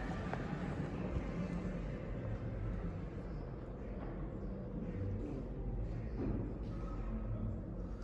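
Room tone: a steady low rumble with faint, indistinct background murmur and no distinct event.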